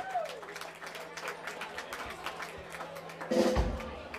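Audience clapping and scattered voices in a hall between songs, over a faint steady amplifier hum. Near the end a louder low thump and a held note from the stage.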